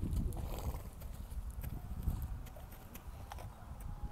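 A horse in a rug walking slowly over dry, packed dirt, its hooves stepping and scuffing in a few scattered soft clicks over a low rumble.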